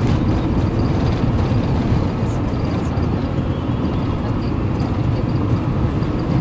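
Steady rumble of engine and tyres heard from inside a moving vehicle cruising on an asphalt road.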